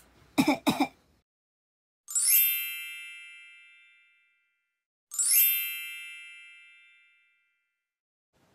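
Two identical bright chime sound effects about three seconds apart. Each is struck once and rings out, fading over about two seconds.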